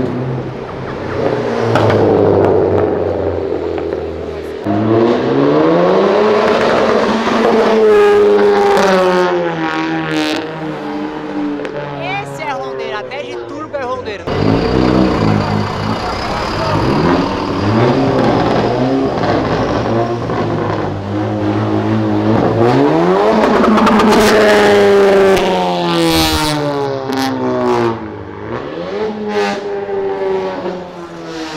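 Car engines revving hard and accelerating as cars pass one after another, each run climbing steeply in pitch and dropping back, repeated many times.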